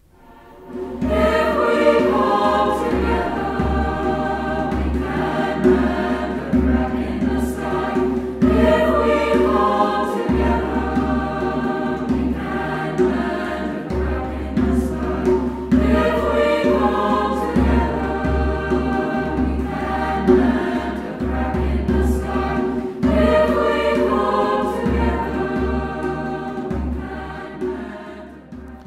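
A mixed choir of men's and women's voices singing in harmony, with a hand drum beating low underneath. The singing comes in about a second in and fades near the end.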